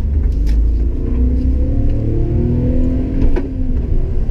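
Three-cylinder 550 cc engine of a 1988 Honda Acty kei van, heard from inside the cab, pulling under load as the clutch is eased out from a standstill, its note rising slowly. A bit past three seconds there is a knock and the engine note drops.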